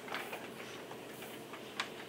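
Quiet room tone in a pause between words, with a few faint, irregularly spaced clicks, the clearest one near the end.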